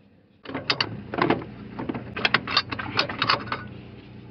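Irregular metallic clicks and clinks as a loose steel plate on the engine mount bracket is worked by hand against the bolts and studs.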